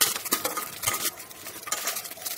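Metal spatula stirring onions in a metal pressure cooker, scraping and clicking against the pot's bottom and sides about six times at an irregular pace.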